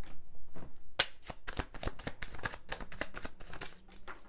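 A deck of tarot cards being shuffled by hand, a rapid run of soft card slaps and flicks starting about a second in.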